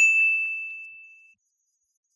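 A single bright ding, a bell-like chime that strikes at once and rings out, fading away over about a second and a quarter. It is an editing sound effect that marks a highlighted click on the screen.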